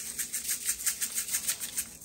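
Plastic shaker jar of gold sprinkles shaken over a bowl, the sprinkles rattling inside it in quick even strokes, about six a second.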